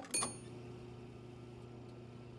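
A gas pump's single bright, bell-like ding, followed by a steady low electric hum from the pump.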